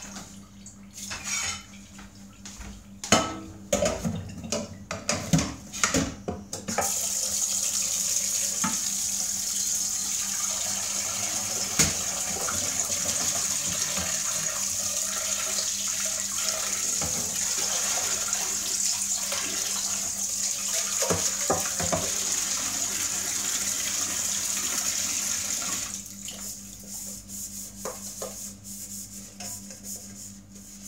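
Kitchen tap running into a stainless steel sink for about twenty seconds while a pot is rinsed under it. Before the tap is turned on and after it is turned off, a pot and dishes clatter and knock against the sink.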